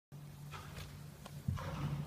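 Small long-haired dog growling low close to the microphone, with two breathy sniffs, about half a second and a second and a half in.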